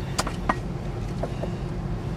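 Car engine idling, a steady low hum heard from inside the cabin, with a couple of short clicks in the first half-second.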